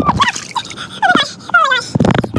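Heavily sped-up voices, squeaky and unintelligible: short high-pitched chirps and quick falling glides in rapid succession, with a few clicks.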